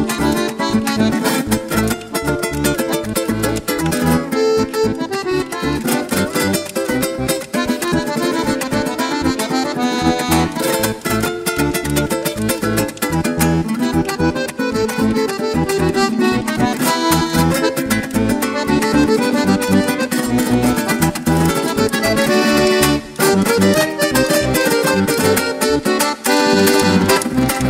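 Instrumental passage of a Venezuelan cuatro strummed in a dense, driving rhythm with a Hohner accordion playing the melody over it and bass underneath. The band stops for a moment about three seconds before the end.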